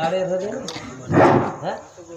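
A man's voice calling out short phrases into a microphone, with the loudest call about a second in.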